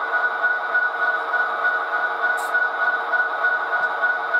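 Steady diesel engine sound from the Soundtraxx Tsunami DCC sound decoder in an HO-scale Athearn Genesis SD70ACe model locomotive, played through its small onboard speaker: an even hum with a strong high ringing tone.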